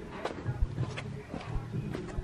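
Light, irregular knocks and clicks over a low background, about five in two seconds: the handling noise of a camera being carried around by hand.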